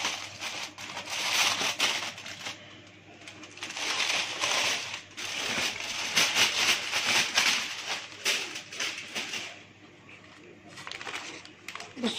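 Aluminium foil and baking paper crinkling and rustling as they are peeled off a roasting tray, in several spells with short lulls between.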